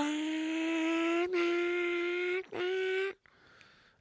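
A man's voice imitating a motorcycle engine at speed: one held, slowly rising tone that dips briefly about a second in, breaks off, and comes back a little higher before stopping about three seconds in.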